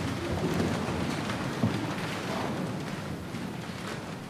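A congregation standing up from the pews: a steady shuffling and rustling of many people rising.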